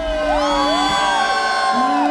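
Live band music at a break in the beat: the drum stops, leaving long held notes that slide up and down in pitch over a steady lower note, with whoops from the crowd.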